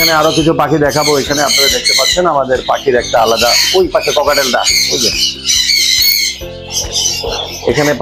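Many caged parrots squawking and chattering without pause, over background music with sustained notes.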